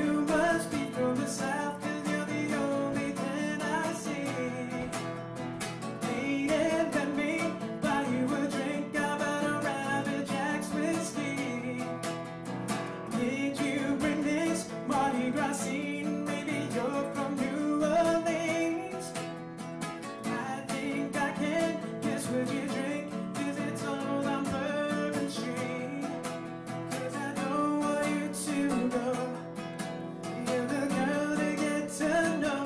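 A man singing a song while playing an acoustic guitar.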